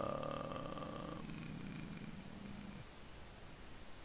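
A man's drawn-out "ummm" hesitation held at a steady pitch for nearly three seconds: an open vowel that closes into a hum about a second in, then fades out.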